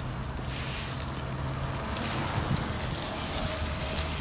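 Outdoor road ambience: a steady low hum of vehicle traffic that drops to a lower pitch about two seconds in, with faint scattered clicks of footsteps on asphalt and brief hissing swells.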